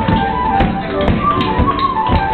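Tap shoes striking the floor in a quick, irregular run of taps over a live flute melody.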